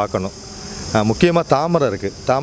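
A steady, high-pitched drone of insects in garden vegetation, under a man's voice talking near the start and again in the second half.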